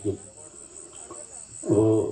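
Crickets chirping: a steady high trill of rapid, even pulses. A man's voice over a microphone comes back near the end.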